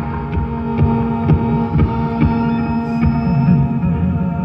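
Live post-rock band playing a slow drone: several steady held tones over a low, throbbing rumble, with a bowed double bass among them.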